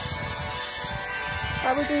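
Background music: a song with steady held notes, the singing line coming back in near the end, over a low rumble on the microphone.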